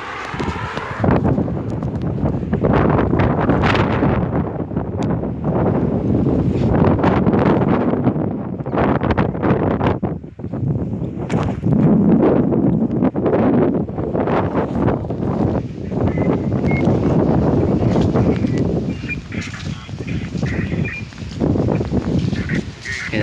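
Wind buffeting the microphone: a loud, gusting rumble that rises and falls unevenly.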